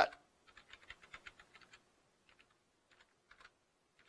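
Faint computer keyboard typing: a quick run of keystrokes for the first couple of seconds, then a few scattered keystrokes.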